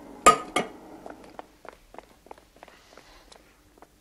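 Metal tools clinking and knocking on a lathe as the cutter is handled and set, with two sharper, louder clinks in the first second followed by a scatter of light taps.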